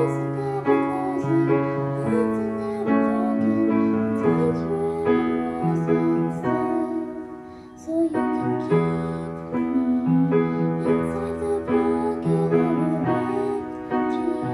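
Upright piano playing a slow accompaniment: held chords over a stepping bass line, easing off briefly about seven seconds in before picking up again.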